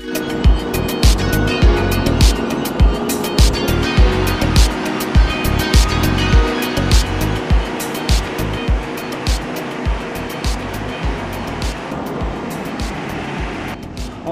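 Background music with a steady beat of about two thumps a second; it starts suddenly and cuts off suddenly.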